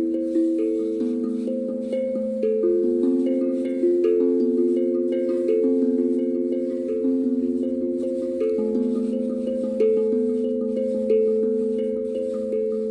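Hapi steel tongue drum in the A Akebono scale, played with mallets: single notes struck one after another, each ringing on under the next, forming a slow, meandering melody.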